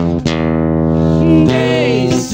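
Acoustic guitar strummed, its chord left ringing, with a man's singing voice coming in over it with a held, bending note in the second half.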